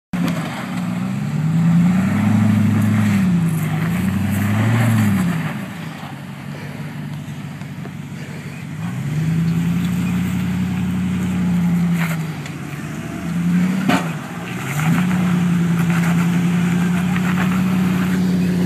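Engine of a lifted Jeep Grand Cherokee crawling over rock. It revs up and down twice, drops back and quieter for a few seconds, then holds steady higher revs under load. A sharp knock about fourteen seconds in, with a lighter click shortly before it.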